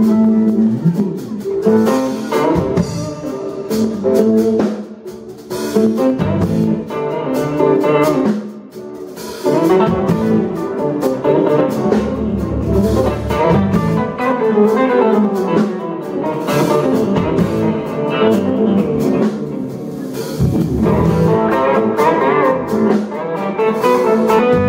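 Live blues band playing an instrumental passage: electric guitars over a drum kit, with brief drops in the sound about five and eight seconds in.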